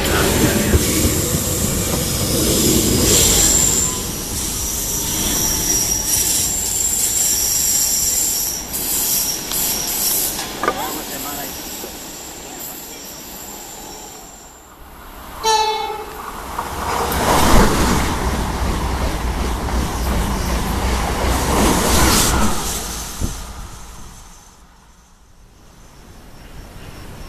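An electric commuter train runs into the station, its wheels squealing in thin high tones over the rumble. After a break a train horn sounds briefly, and a train then passes with a loud rush that builds, holds for several seconds and fades away.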